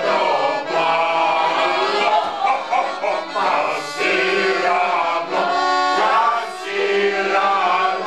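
A piano accordion playing a song while a small group of men sing along together in unison.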